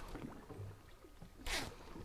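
Faint ambience on a boat at sea: a low wash of water, with one brief rush of noise about one and a half seconds in.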